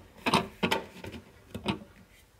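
A clear plastic refrigerator lamp cover being pressed back into place by hand: three sharp plastic clicks as it snaps onto the fridge's inner wall.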